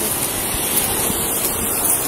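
Steady rushing noise on a police body camera's microphone, with no distinct events.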